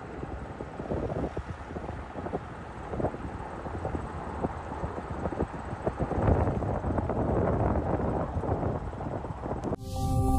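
Wind buffeting an outdoor microphone: a low rumble with irregular crackles that grows louder after about six seconds.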